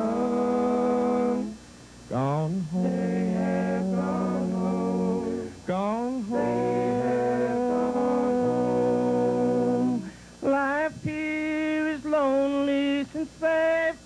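Male bluegrass gospel quartet singing in close harmony, old-time quartet style, with long held chords and short breaks between phrases.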